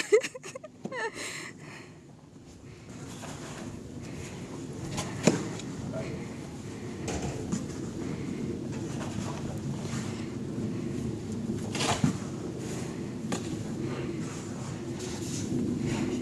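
Snow shovel scraping and scooping through snow over a steady low background noise, with sharper scrapes about five seconds in and again around twelve seconds.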